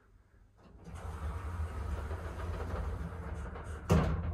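KONE MonoSpace lift running with a steady low rumble that swells up about a second in, ending in a sharp knock near the end.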